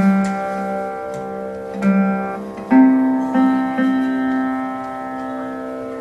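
Chitraveena, the fretless Carnatic lute played with a slide, plucked in a short phrase. The strongest pluck comes about three seconds in on a higher note, followed by two lighter plucks, and the note then rings on and fades.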